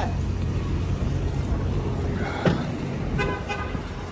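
A brief car horn toot about three seconds in, over a steady low street rumble, with a single knock shortly before it.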